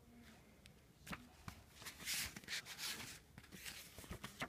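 Pages of a hardcover picture book being turned: faint paper rustling with a couple of light taps in the first half and louder rustles in the second.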